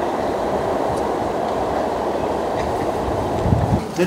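A steady, fairly loud rumble of city noise from the street below, with a few low thumps near the end.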